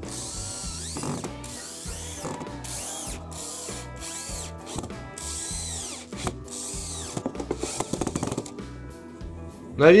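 Power drill-driver driving washer-head screws through tyre rubber into a wooden board, its motor whining in repeated bursts of about a second, with a run of rapid clicking near the end.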